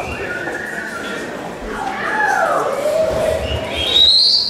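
Public-address microphone feedback: high ringing tones that hold, shift in pitch and slide downward, rising to a louder, higher squeal near the end.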